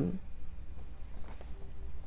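Faint scratching of a pen writing on a paper card, over a low steady hum.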